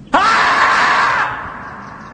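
A single loud, drawn-out scream, the 'screaming marmot' meme sound. It bursts in just after the start with a quick upward swoop, holds for about a second, then fades away.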